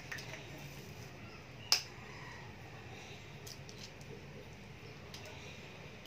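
Eggs being cracked and separated by hand: one sharp crack of shell a little under two seconds in, with a few fainter clicks of shells being handled, over a low steady hum.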